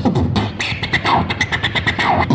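Beatboxing into a handheld microphone, played through a portable loudspeaker: a fast run of percussive mouth beats with some pitched vocal sounds between them.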